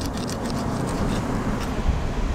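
Steady low rumble of wind and surf on a beach, with a few faint ticks as a fillet knife cuts through a mullet's rib bones.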